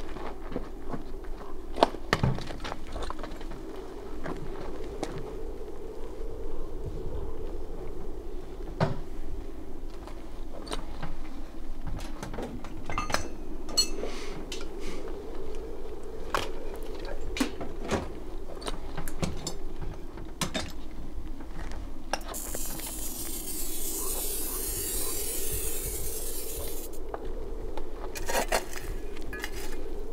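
Metal tools and machine parts clinking, tapping and scraping irregularly as machinery is repaired by hand, over a steady low hum. About 22 seconds in, a hiss starts and stops suddenly some five seconds later.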